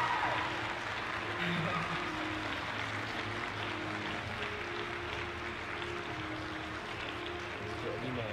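Ice-arena ambience: a steady wash of crowd noise with faint background music holding long notes.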